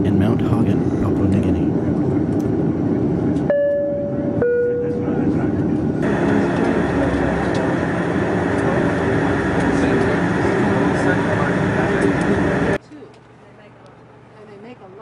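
Propeller airliner's engines droning in the cabin, then two clear chime tones, the second lower, about a second apart. From about six seconds in comes a louder, steady turboprop engine noise, which cuts off suddenly near the end to a much quieter background.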